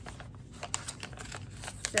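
Handling of a paper mailing envelope: a few light clicks and rustles as it is turned over before opening.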